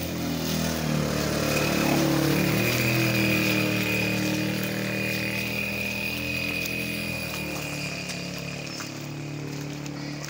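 A small engine running, its pitch wavering over a steady high whine; loudest about two seconds in, then slowly fading.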